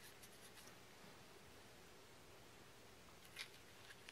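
Near silence, with faint soft ticks from hands handling a paper strip and pins on a thread-wrapped temari ball, and one sharper click a little before the end.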